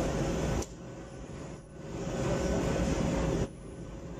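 Automatic fabric spreading machine running, a steady mechanical whir with a faint constant hum, which drops away abruptly about two-thirds of a second in, builds back up over the next second and drops again shortly before the end.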